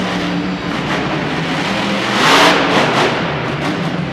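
Monster truck's supercharged V8 engine running as the truck drives across the arena dirt, with one louder rev about two seconds in.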